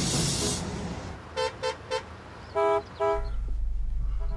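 Car horns honking in a traffic jam: three quick short toots, then two longer blasts at a different pitch. A brief rushing noise fades at the start, and a low steady engine rumble comes in near the end.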